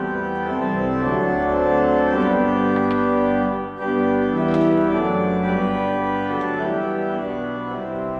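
Casavant pipe organ playing sustained full chords that change every second or so, with a short break in the sound a little before halfway.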